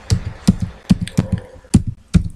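Computer keyboard being typed on: a quick, uneven run of keystrokes, several a second, as a word is entered into a search box.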